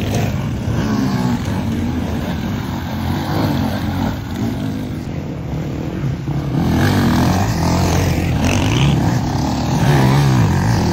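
Several enduro dirt-bike engines revving as the bikes pass one after another, pitch rising and falling with the throttle. It dips a little midway and grows louder in the second half as more bikes come through.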